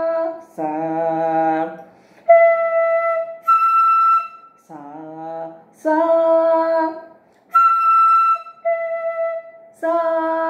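Bamboo flute playing short held single notes, jumping between two pitches an octave apart, alternating with a woman singing the note syllables with slides between pitches.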